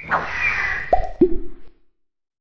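Cartoon logo sound effects: a swoosh with a falling glide, then two quick bloops about a third of a second apart, each dropping sharply in pitch, the second lower than the first.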